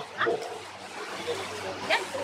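Tour boat's motor running with a steady low hum, with two short high-pitched rising yelps, one about a quarter second in and one near the end.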